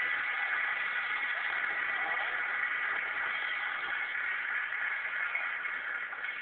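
A drum roll, steady and unbroken throughout.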